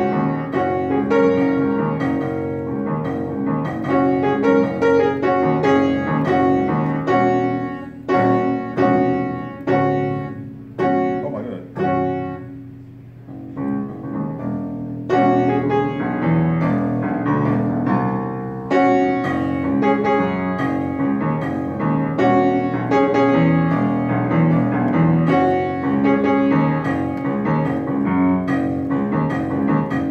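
Schumann upright piano played with both hands: full chords under a melody. The playing thins to a few softer notes about halfway through, then goes back to full chords.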